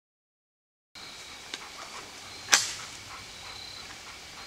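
About a second of dead silence at an edit. Then faint night-time outdoor background with steady thin high tones and a few light ticks, and one sharp, loud snap about two and a half seconds in.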